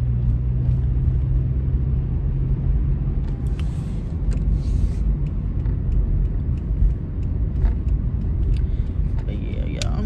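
Car cabin noise while driving: a steady low rumble of the engine and road, with a low hum that fades out about three seconds in and a few faint clicks. A brief voice sounds near the end.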